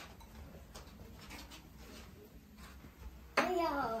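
Faint clinks of bowls, spoons and chopsticks at a dinner table, then a voice starts speaking near the end.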